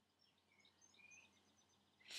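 Near silence: room tone, with a few faint, short high chirps in the middle.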